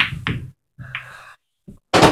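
Pool balls clicking against one another a few times in short sharp knocks, the loudest near the end, after breathy laughter at the start.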